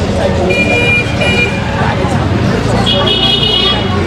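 A vehicle horn on a busy street beeps twice in quick short blasts about half a second in, then gives a longer honk near the end, over people's voices and passing traffic.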